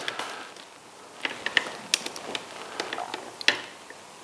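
Handling noise as the camera is tilted down on its mount: a scatter of small clicks and taps over the middle couple of seconds.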